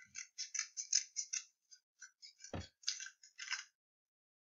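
Quick, crisp crackles and rustles of magazine paper being handled and cut with scissors, with one dull thump about two and a half seconds in.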